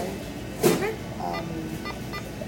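Indistinct background voices with a brief loud voice-like sound about two-thirds of a second in.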